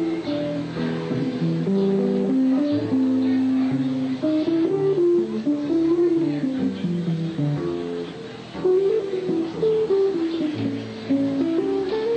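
Live traditional New Orleans-style jazz from a small acoustic band: saxophone, upright bass and guitar playing together, with a moving melody line over the bass.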